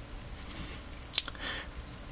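Faint handling noise: light rustling with a couple of small clicks, the clearest about a second in.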